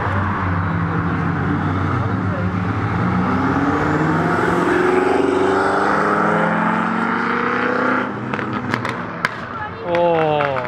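Black BMW sedans accelerating past, the engine note rising steadily for several seconds. About eight seconds in the sound falls away and a few sharp cracks follow, then another car's engine begins revving up at the very end.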